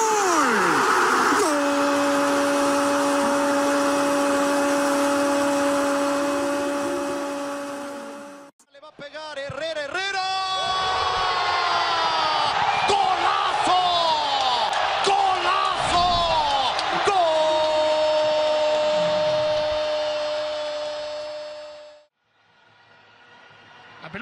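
A Spanish-language football commentator's drawn-out 'gooool' cry, held on one pitch for about seven seconds, over stadium crowd noise. After a sudden cut comes excited commentary, then a second long 'gol' cry held for about five seconds that fades away near the end.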